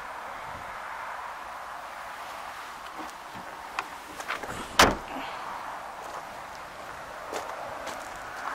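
Tailgate of a Vauxhall Insignia hatchback being shut. A few light clicks come first, then one heavy thud about five seconds in, over a steady background hiss.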